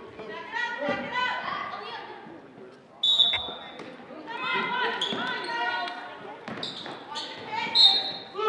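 Referee's whistle blown twice: a short shrill blast about three seconds in and another near the end. Voices call out across the gym throughout, with a few thuds of a basketball bouncing.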